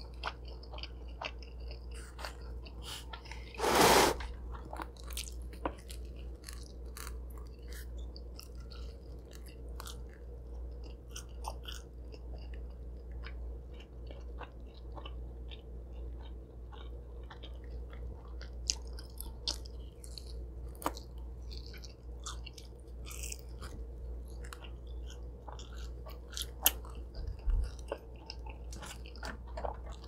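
A person chewing mouthfuls of cheese pizza close to the microphone, with many small wet mouth clicks over a steady low hum. One louder, longer noise comes about four seconds in.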